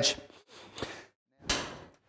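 Metal cabinet door being shut: a single sharp knock about one and a half seconds in that rings out briefly, with a faint click before it.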